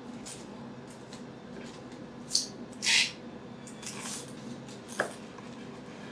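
Imarku 8-inch high-carbon stainless chef's knife slicing through a whole onion. It makes a couple of short crisp cuts about two and a half and three seconds in, and a sharp click about five seconds in. The blade needs force to get through the onion.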